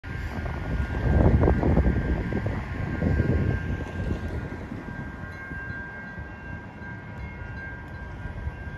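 Wind gusting on the microphone, strongest in the first few seconds and easing off, over a steady high-pitched ringing tone.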